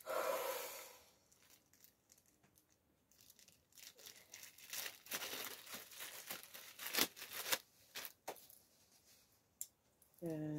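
Clear plastic packaging bag rustling and crinkling as a small flexible tripod is handled and pulled out of it. A louder rustle comes in the first second, then scattered crackles and a few sharp clicks.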